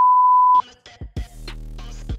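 Bars-and-tone test beep: a steady single-pitch tone that cuts off abruptly about half a second in. Background music with a drum beat starts straight after.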